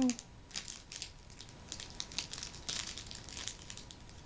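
Plastic wrapping of a Hot Wheels Mystery Models pack crinkling as it is handled, in a run of short irregular crackles.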